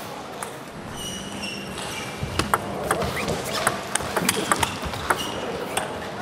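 Table tennis rally: the plastic ball clicking sharply off the rackets and the table, several hits a second, starting about two seconds in.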